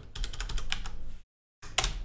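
Computer keyboard being typed on: a quick run of key clicks as a web address is entered, then after a short pause one louder key strike near the end.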